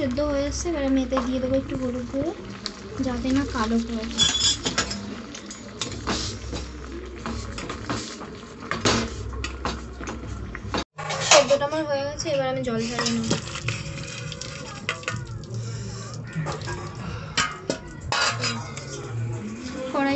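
Metal spoon clinking and scraping against a stainless steel pan of boiling raw jackfruit pieces, with water bubbling. A background voice comes and goes, at the start and again about halfway through.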